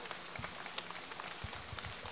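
Handling noise on a handheld microphone: scattered light clicks, then several low thumps in the second half as the mic is moved.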